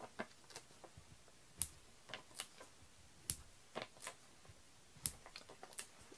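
Light, scattered clicks and ticks of foam adhesive dimensionals being peeled off their plastic backing sheet and pressed onto the back of a cardstock circle, with three sharper ticks standing out.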